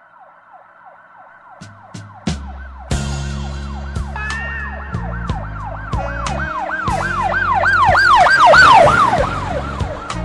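A siren effect, a quickly repeating up-and-down wail that builds louder to a peak near the end and then fades, laid over a music track whose bass and beat come in about two seconds in.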